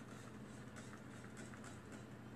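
Faint, repeated short squirts of a trigger spray bottle misting plain water, over a low steady hum.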